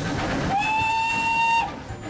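Steam locomotive whistle blown from the cab: one steady note about a second long, starting about half a second in.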